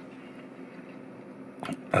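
Soft chewing of a mouthful of seared scallop topped with finger lime pearls, over a steady low background hum.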